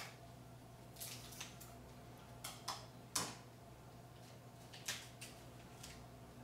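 A few light clicks and taps of kitchen utensils and containers being handled, about seven in all, the loudest a little after three seconds in, over a faint steady hum.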